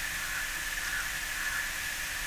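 Steady background hiss with a faint, steady high-pitched tone running through it.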